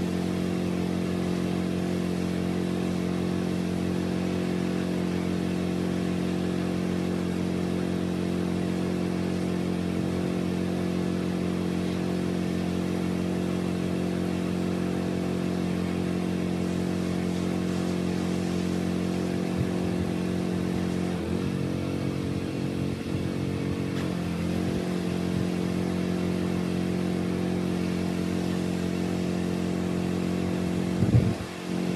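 Small gasoline engine of a pressure-washing rig running steadily at a constant speed. Its pitch dips briefly a couple of times about two-thirds of the way through.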